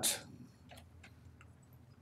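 A man's spoken word trails off with a hiss at the very start, then quiet room tone with two faint clicks.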